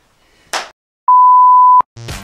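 A short hiss, then a loud, steady, single-pitched bleep tone lasting under a second, starting and stopping abruptly out of dead silence: an edited-in censor-style bleep.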